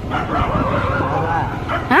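Stray dogs barking and yipping in the street, several faint arching calls over a low steady rumble.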